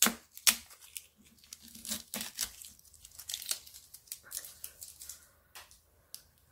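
A clear plastic sticker-pack sleeve crinkling as fingers pick at a label stuck on it and peel it off. It comes as irregular sharp crackles, the loudest in the first half-second.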